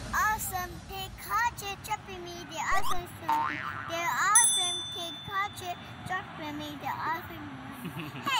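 A child talking in a high, swooping pretend voice for a toy doll. A short high tone sounds a little past the middle.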